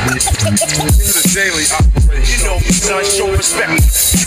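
Hip hop track: deep bass hits about once a second, each sliding down in pitch, under a rapped vocal line.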